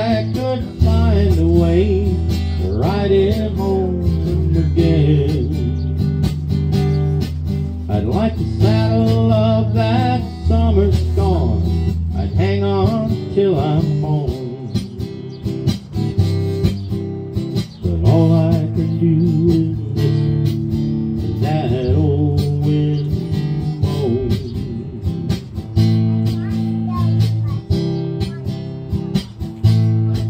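Instrumental break in a country song: a steel-string acoustic-electric guitar strummed and amplified through a small PA, over held low notes, with a wavering, bending melody line above.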